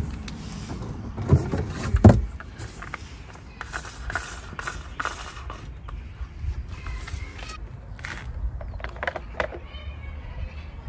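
A cardboard box being opened and plastic deck pedestal parts being handled: irregular rustles, clicks and knocks, with two louder knocks between one and two seconds in, over a low steady rumble.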